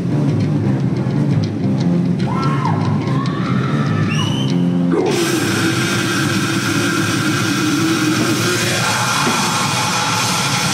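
Death metal band playing live, with heavy distorted guitar and drums. The sound turns much fuller and brighter about five seconds in, as the whole band kicks in.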